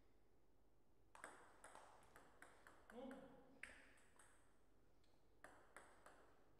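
Table tennis rally: the ball clicks off bats and table in quick succession for about a second and a half, then a player gives a short shout. A few separate ball bounces follow.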